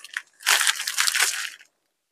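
Crinkling of the clear plastic sleeves on packets of necklaces as they are handled and shifted, a rustle lasting about a second.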